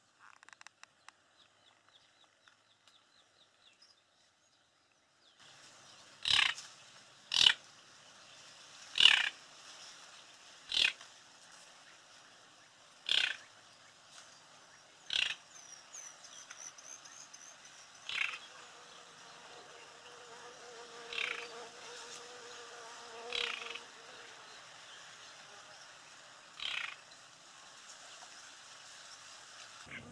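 Short, sharp animal calls, most likely a bird: about ten of them, spaced one to three seconds apart, starting about six seconds in over a faint steady outdoor hiss.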